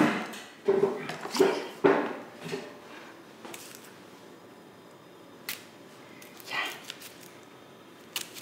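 A woman's short whimpering, strained vocal sounds in the first couple of seconds. Then a few sharp isolated knocks, a kitchen knife striking a cutting board while she clumsily cuts an onion.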